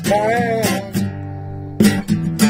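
Acoustic guitar song: a singer holds a wavering note over the strummed guitar, then the guitar chord rings on by itself for about a second before a fresh strum near the end.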